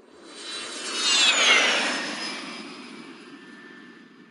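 Cartoon sound effect of a jet plane flying past: jet noise swells to a peak about a second in, with a whistle falling in pitch as it passes, then slowly fades away.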